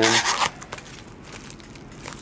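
Plastic shrink-wrap on a card box being slit with a small plastic cutter: a short zip-like tearing at the start, lasting about half a second, followed by soft rubbing and handling of the wrapped box.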